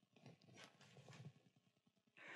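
Near silence with a few faint soft taps and rustles in the first second or so, from a Bible being handled on a wooden lectern.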